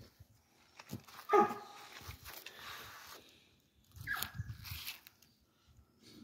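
A dog barks once about a second in, then gives a short, higher yelp that falls in pitch about four seconds in.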